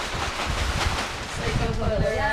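Kite leading-edge fabric and its plastic bladder rustling as they are shaken, working talc through the sleeve so the bladder slides in without twisting. Wind buffets the microphone throughout.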